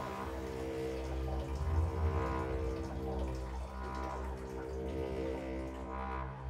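Dark, droning film score: several low tones held steadily over a deep bass rumble, with soft swells rising and fading above them.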